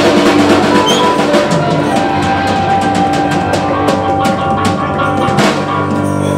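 Live rock band with drum kit: a fast run of drum hits, like a drum roll, over held guitar and bass notes, with a loud cymbal-and-drum hit near the end.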